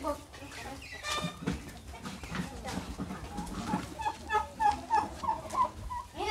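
A domestic hen clucking in a quick run of short, repeated calls in the second half, over faint background chatter.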